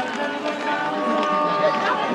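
Several indistinct voices calling and talking outdoors, overlapping, with one long held pitched note about a second in.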